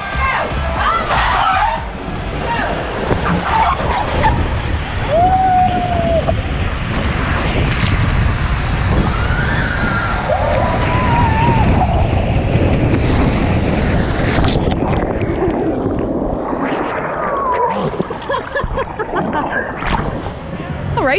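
Water rushing and sloshing through an enclosed water-slide tube as riders go down it, with a couple of short yells, under background music.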